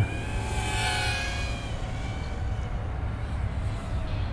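Small brushless motors and propellers of a 65 mm toothpick FPV quadcopter whining in flight. The pitch rises and falls with throttle, and the sound is loudest in the first two seconds, then fades.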